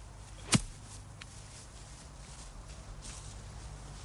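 A single sharp strike of a golf club, a nine-iron, hitting the ball out of long rough grass, about half a second in.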